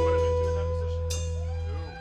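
A live rock band's final chord ringing out on electric guitar, fading steadily as the song ends. A low bass note under it cuts off near the end.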